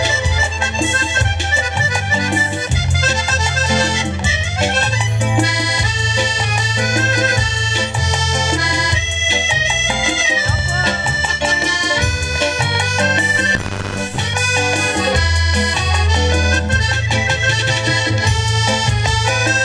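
Piano accordion playing a lively, Latin-flavoured tune: a busy melody over a bass line that changes about once a second. There is a short hiss about three-quarters of the way through.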